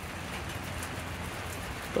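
Steady rain falling, an even hiss of drops.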